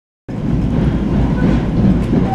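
Steady low rumble of a moving Metro-North Comet V passenger coach heard from inside the car, its wheels running on the rails. It begins abruptly a moment in.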